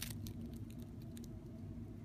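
Faint, irregular small clicks and crackles of a dragonfly's jaws crunching into another dragonfly's exoskeleton, over a low steady background hum.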